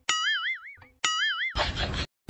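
Cartoon 'boing' sound effect played twice, about a second apart: each a half-second tone wobbling up and down in pitch. Near the end, outdoor background noise comes back in.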